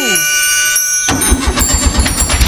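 Cartoon car engine starting: it catches suddenly about a second in and runs with an uneven low chugging.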